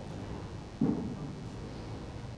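Quiet room tone with one short, low sound a little under a second in.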